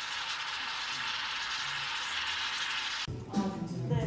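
Bialetti Brikka moka pot hissing and sputtering as the brewed coffee gushes up through its pressure valve. The sound is a steady, even hiss that cuts off suddenly about three seconds in, giving way to music.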